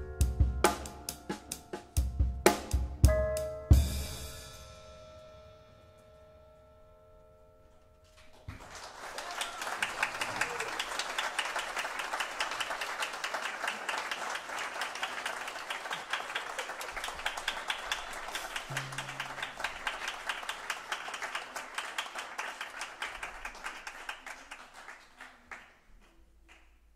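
A jazz piano trio of grand piano, double bass and drum kit ends a tune with a few accented final chords struck together with drum and cymbal hits. The last chord rings out and fades over several seconds. After a short pause, the audience applauds steadily for about seventeen seconds, and the applause dies away near the end.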